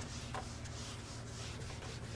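Whiteboard eraser rubbing across a whiteboard in faint, repeated wiping strokes.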